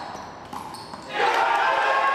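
A rubber wallball smacking off the wall and floor, with sneakers squeaking on the court. About a second in, a loud, drawn-out shout from onlookers reacting to the shot takes over.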